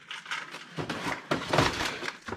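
Rummaging through cardboard boxes of small scrap parts: a run of knocks, scrapes and rustles, busier in the second half.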